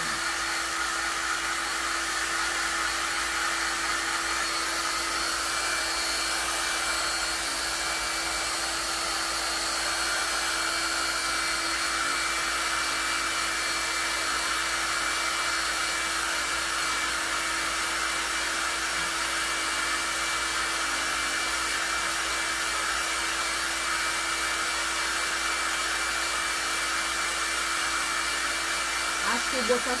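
Handheld electric hair dryer blowing steadily with a constant hum, drying freshly applied patina paint on small craft pieces.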